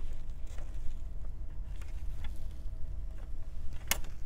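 Clear plastic air baffle of a Supermicro CSE-836 server chassis being set down over the CPUs and memory, with a few light plastic taps and one sharp click near the end as it is pressed into place. A steady low hum runs underneath.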